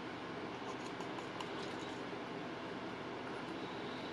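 Steady hiss of background room noise, with a few faint light clicks.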